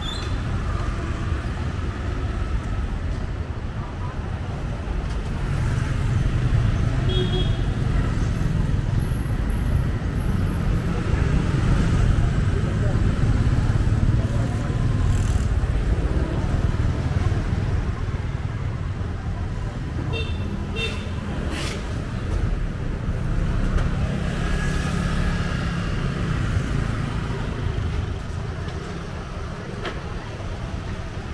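Street traffic heard while riding through it: a steady low engine and road rumble with motorbikes and cars passing, and a few short horn toots around seven and twenty seconds in.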